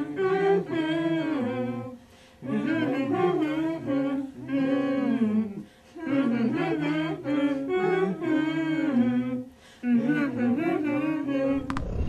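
A small group of people humming a song together without accompaniment: four melodic phrases with short breaks between them.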